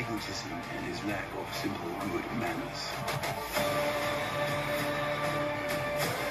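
Film trailer soundtrack: a man's voice delivering a line of dialogue over music, then from just past halfway a sustained, steady musical chord.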